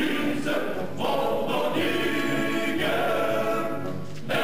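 A choir singing in phrases, with short breaks between them about a second in and near the end.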